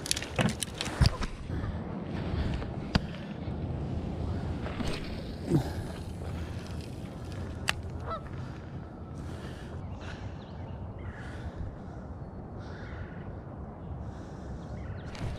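Geese honking now and then over a steady outdoor background, with a few sharp clicks from handling the fishing rod and reel in the first second or so.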